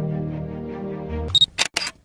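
Held music chord that cuts off about 1.3 seconds in, followed by a short high beep and a single-lens reflex camera shutter sound, two quick clicks close together.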